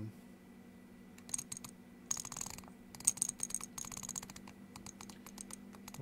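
Rapid clicking from the detents of a hand-turned CNC handwheel incremental encoder, in quick runs of clicks from about a second in.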